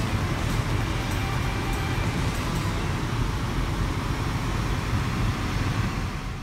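Steady road and engine noise inside a moving car's cabin, a low, even rumble.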